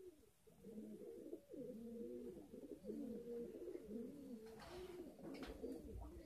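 Domestic pigeons cooing faintly, a steady string of short, low, rising-and-falling coos. A brief rustle of feathers comes near the end as a wing is spread out.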